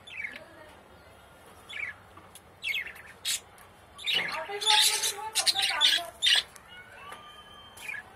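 A young budgerigar squawking as it is held in the hand and dosed with liquid medicine from a dropper: a few short high chirps, then about two seconds of loud, harsh squawks from just past the middle.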